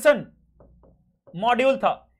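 A man talking in two short bursts of speech, with a single sharp knock against the board near the start.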